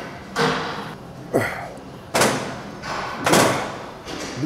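A man's forceful exhalations, one with a short grunt, about once a second in time with dumbbell repetitions: effortful breathing through a set of a shoulder exercise.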